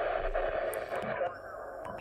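Steady receiver hiss from the ICOM IC-706MKII transceiver's speaker, tuned to the 40 m band. A little past halfway the hiss narrows and loses its upper part as the receive mode is switched from FM to RTTY. A couple of faint clicks come from the front-panel buttons.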